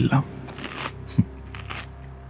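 A man's voice finishes a word. Then a low steady drone plays under a few short, soft rustling noises and one brief low thump a little over a second in: sound effects in an audio drama.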